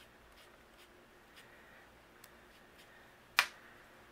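Faint soft taps of a foam finger dauber dabbing ink onto die-cut cardstock petals, then one sharp click near the end.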